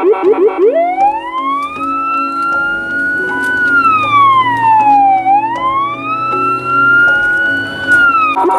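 Police car siren sounding for an emergency run, heard from inside the patrol car. A fast yelp for the first second or so gives way to a slow wail that rises, holds, dips about five seconds in and rises again.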